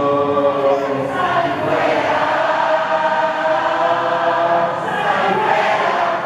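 A large congregation singing together, many voices blended and holding long notes that shift in pitch every second or so.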